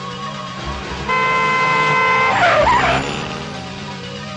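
A car horn sounds one steady blast of just over a second, then tyres screech briefly as a car brakes hard, over background film music.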